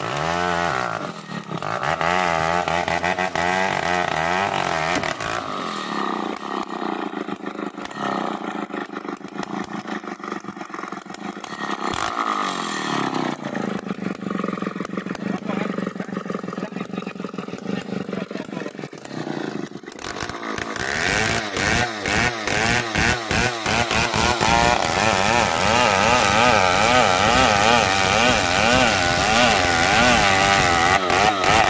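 Two-stroke Stihl chainsaw running under load as it saws through a large log, its engine pitch wavering up and down as the bar bites into the wood. The sound gets louder and more pulsing about two-thirds of the way in.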